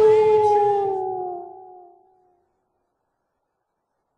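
A single long wolf howl, one steady held note that sags slightly in pitch and fades out about two seconds in, followed by silence.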